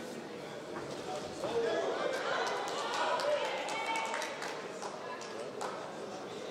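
Voices from the crowd and the corners shouting in a large hall, swelling for a couple of seconds, with a run of sharp smacks of boxing gloves landing during an exchange of punches.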